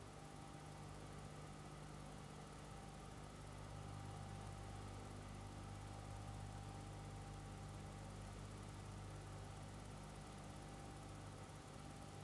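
Faint steady hum and hiss with no events in it: background noise of the soundtrack while nothing sounds.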